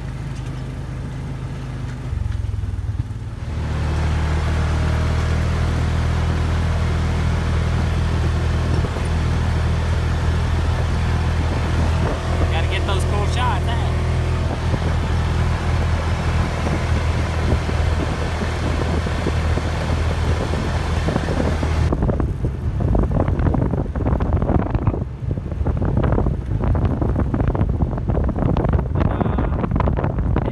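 Polaris RZR side-by-side's engine running steadily as it cruises down a gravel trail, a constant drone with the rattle of the ride. About two-thirds of the way through, the drone gives way to wind buffeting on the microphone.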